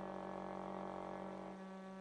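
Sustained drone of held tones from accordion and trumpet in free-improvised music, a dense steady chord. The lowest notes drop out about one and a half seconds in.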